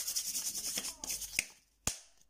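Pokémon trading cards sliding and rubbing against each other as a fanned stack is handled, followed a little before the end by one sharp snap.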